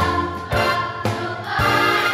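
Children's choir singing a jazz number, with a steady beat of about two strokes a second under the voices.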